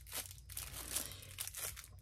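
Clear plastic packaging bag crinkling as it is handled, in a run of short rustles.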